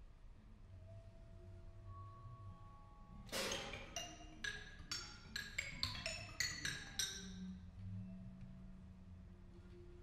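Vibraphone played with mallets. A few soft held notes give way to a loud stroke about a third of the way in, then a quickening run of about ten ringing strokes, which settles into a low, long-sustained note.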